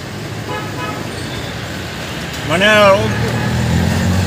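Road traffic: a faint vehicle horn sounds briefly about half a second in, then a vehicle engine idles with a steady low hum from about halfway through.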